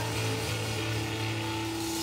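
A live rock band's amplified instruments hold one low droning note, steady and unbroken, with a faint haze of noise above it.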